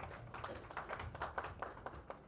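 Faint, irregular scattered clapping from a few people, a loose run of separate claps rather than full applause.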